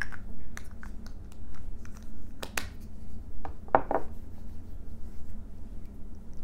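Fingertips patting and rubbing primer onto facial skin close to the microphone: a scatter of soft clicks and small scrapes, with a fuller rub just before the middle. A low steady hum runs underneath.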